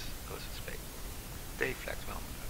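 Quiet speech in short fragments, a stronger syllable near the end, over a steady background hiss.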